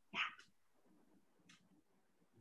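A short spoken "yeah" at the very start, then near silence with one faint click about a second and a half in.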